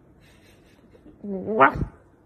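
A puppy's half-formed bark: one short, strained vocal sound about a second in that rises in pitch, a bark building up without fully coming out.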